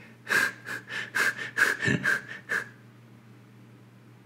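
A person making a quick run of about seven short breathy sounds over two seconds or so, then quiet room noise.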